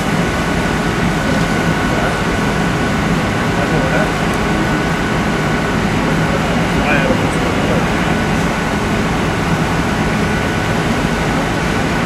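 Steady drone of an idling vehicle engine, a constant low hum under an even wash of noise.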